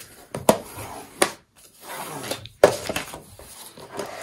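Hand rubbing and pressing white cardstock down onto double-sided score tape, with paper rustling and about three sharp taps or clicks as the card is handled.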